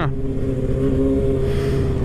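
Kawasaki Ninja ZX-6R 636's inline-four engine running at a steady pitch while cruising, over a low wind and road rumble.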